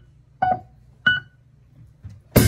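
Two short, staccato keyboard notes, each cut off quickly, with near quiet between them.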